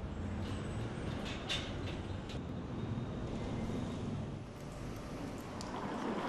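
City street ambience: a steady low rumble of traffic, with a few sharp clicks about one and a half and two seconds in.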